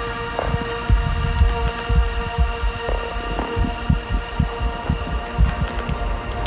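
Live electronic drone music: a sustained synthesizer drone of many held tones over an irregular low throbbing pulse. One of the middle tones drops out about halfway through.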